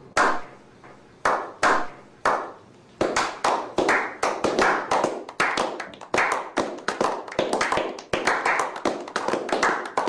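A small group of people clapping their hands, echoing: a few slow single claps, then from about three seconds in steadier applause at about three claps a second, stopping abruptly at the end.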